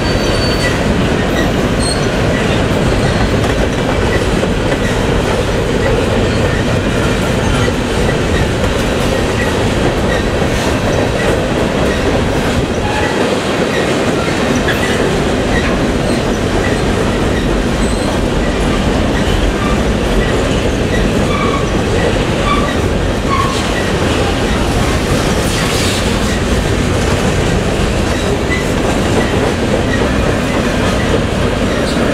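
Covered grain hopper cars of a long freight train rolling past close by: a steady, loud rumble of steel wheels on rail with clickety-clack over the rail joints. A few brief wheel squeals come about two-thirds of the way through.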